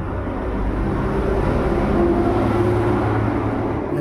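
A low rumble that builds to its loudest about two to three seconds in and then eases off.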